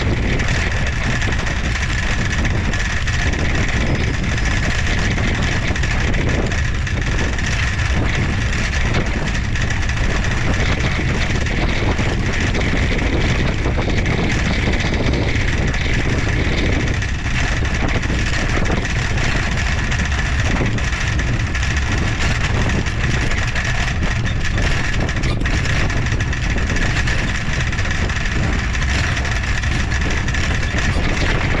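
Wind on an action-camera microphone and tyre noise from a trike rolling along a paved path: a steady, even rush with a faint steady high tone running through it.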